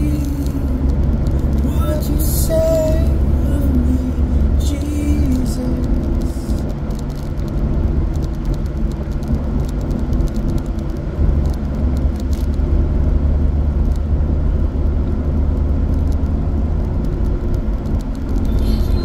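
Steady low rumble of road and engine noise inside a moving car's cabin at motorway speed, with a voice faintly heard over it for the first few seconds.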